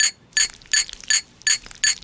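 A thin rod tapping on a glass eye: a run of short, ringing glassy tinks, about three a second.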